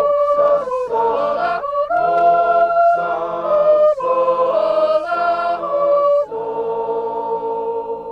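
Mixed choir of men and women singing a cappella in close harmony, moving through sustained chords, then holding one long final chord from about six seconds in.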